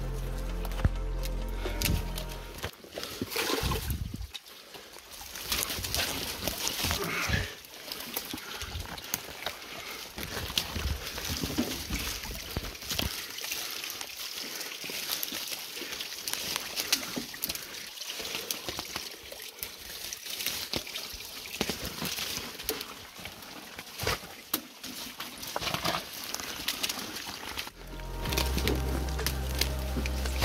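Background music for the first few seconds and again near the end. In between is a steady hiss of running creek water, with rustling, snapping brush and footsteps as someone pushes through dense undergrowth on foot.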